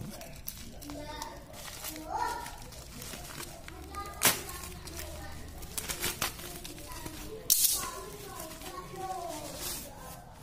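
A plastic mailer bag being slit open with a utility knife and handled, its plastic crinkling, with sharp crackles about four seconds in and again at about seven and a half seconds.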